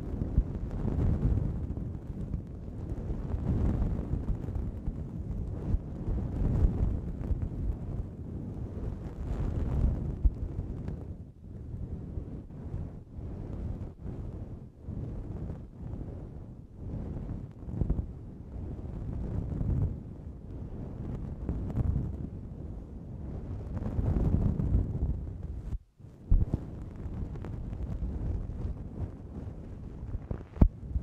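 Soft brush stroked directly over a pair of Behringer C-2 condenser microphones, giving muffled, rumbling swishes that swell and fade in slow, irregular strokes, with one brief break a few seconds before the end.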